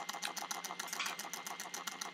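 Faint, rapid, even mechanical clicking, about a dozen clicks a second, over a steady thin whine and a low hum.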